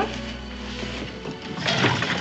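Wooden spinning wheel turning by hand, a light mechanical whir and clatter, over soft background music. A brief pitched, voice-like sound comes near the end.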